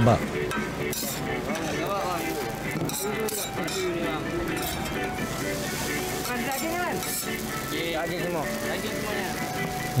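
Murtabak frying on a large flat iron griddle: a steady sizzle with clinks of a metal spatula scraping and turning them, under background music and voices.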